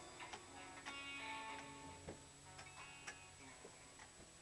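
A live worship band playing softly: a few held guitar and keyboard notes with scattered light clicks and taps.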